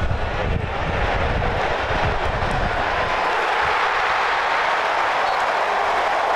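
Football stadium crowd cheering: a steady, dense wash of many voices that grows louder about a second in and holds, with some low rumble over the first few seconds.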